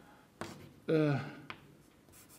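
Chalk striking and writing on a blackboard: two short, sharp clicks about a second apart. Between them is one brief spoken word in a man's voice.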